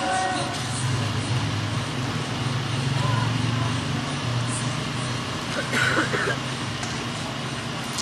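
A steady low hum over broad background noise, with faint, indistinct voices and no clear speech.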